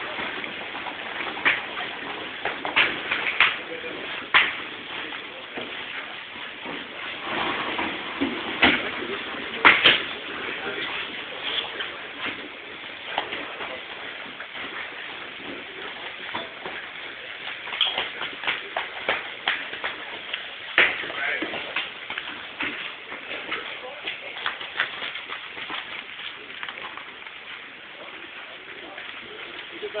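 Several people talking indistinctly at once, with scattered sharp knocks and clicks throughout.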